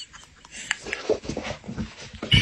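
Domestic cat growling low and grumbling in short wavering bursts, an annoyed warning to the other cat.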